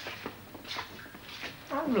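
Footsteps on a hard school floor, a few steps about half a second apart, followed near the end by a boy's voice.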